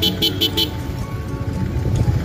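Music with a quick, even beat over the steady low rumble of a motorcycle riding slowly through town traffic; the beat drops away after about half a second, leaving the engine and road noise.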